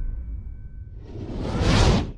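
The tail of the intro music fading out, followed by a rising whoosh transition effect that swells for about a second and cuts off abruptly at the end.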